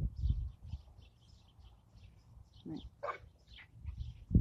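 A couple of short animal calls about three seconds in, over faint high chirps.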